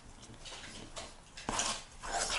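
Metal fork stirring stiff yeast dough in an enamel bowl: soft, irregular squishing and scraping, with one louder scrape about one and a half seconds in.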